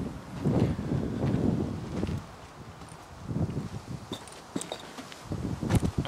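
Footsteps on bare garden soil as someone walks with the camera: a run of uneven, dull steps with some rustling, then fewer steps after a pause.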